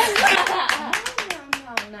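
A quick, uneven run of hand claps, several a second, with a woman's voice over them.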